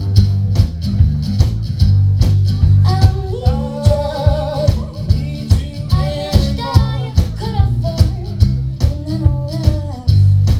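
Live band music: a singer's voice over acoustic guitar, bass guitar and a steady drum beat, with a heavy bass line underneath. The singing comes in about three seconds in.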